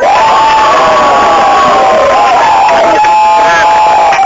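A club audience cheering and whooping loudly, many voices shouting over one another, starting abruptly.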